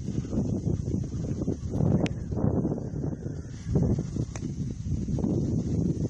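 Wind buffeting the microphone outdoors: an uneven low rumble that swells and fades in gusts, with a couple of faint clicks.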